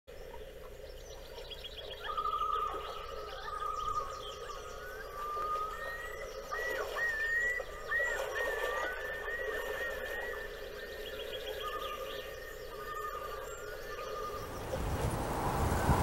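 Wolves howling in long calls, some held on one pitch and some wavering up and down, with faint bird chirps. A rushing noise builds near the end.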